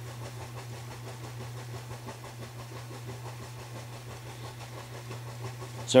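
A steady low hum of room noise, unchanging, with no other events until a voice returns at the very end.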